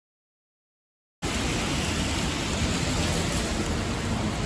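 Complete silence for about the first second, then outdoor background noise, a steady even hiss, starting suddenly.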